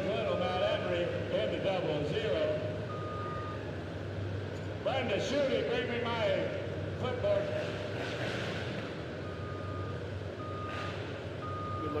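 A heavy-equipment reversing alarm sounds single beeps about half a second long: one near the start, one about three seconds in, then three about a second apart near the end. Crowd chatter and a low engine rumble run underneath.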